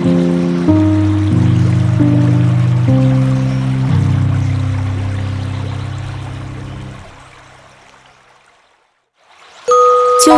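Soft background music of sustained low notes over a steady water-like hiss, fading out in the second half to a moment of silence. Just before the end a new piece begins with bright, chime-like ringing notes.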